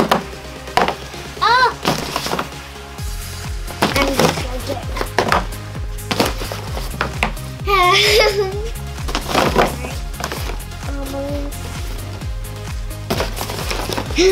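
Upbeat background music whose steady beat comes in about three seconds in. Over it are a young girl's squeals and laughter, with a few light knocks of cardboard boxes being bumped.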